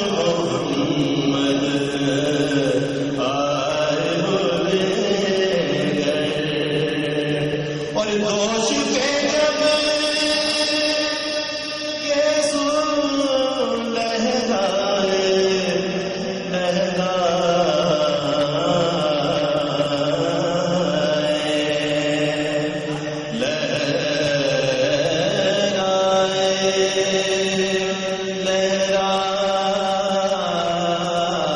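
Male voice reciting an Urdu naat as a devotional chant, in long held notes that step up and down in pitch every few seconds.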